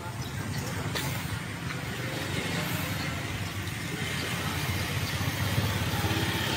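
Street traffic with a motorcycle engine running, getting gradually louder toward the end as it comes near.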